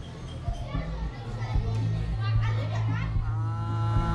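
Children's voices and chatter, with soft background music of sustained notes coming in about three seconds in.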